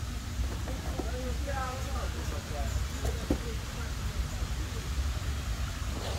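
Outdoor background: a steady low rumble with faint distant voices, and a single sharp click about three seconds in.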